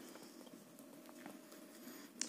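Near silence: faint room tone with a faint steady hum and a few faint ticks.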